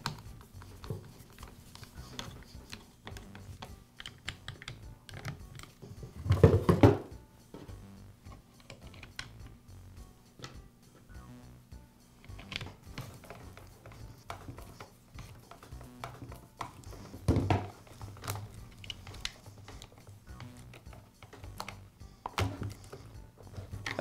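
Screwdriver work on a string trimmer's plastic handle and clutch housing: small scattered clicks and scrapes as screws are driven, with a few louder knocks of the plastic parts, the loudest about six seconds in.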